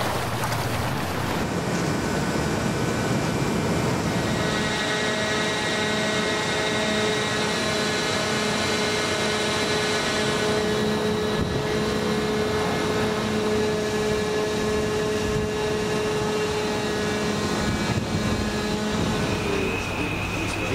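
Steady drone of ship's machinery, with a constant whining tone over it from about four seconds in until just before the end.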